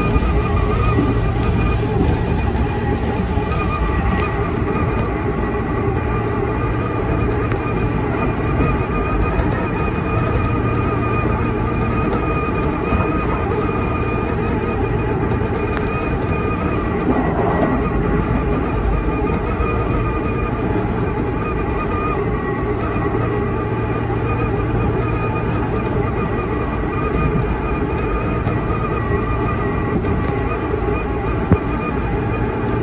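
Tobu 10000 series electric train running at speed, heard from the driver's cab: a steady rumble of wheels on rail with a constant motor whine held throughout.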